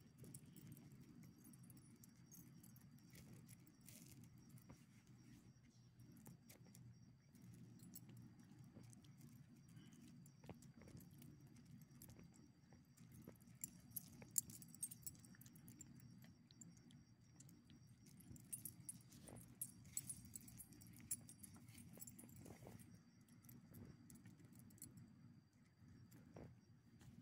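Quiet jingling of dog collar tags and leash clips in scattered bursts, mostly in the middle of the stretch, with small clicks from the dogs moving on gravel, over a low steady hum.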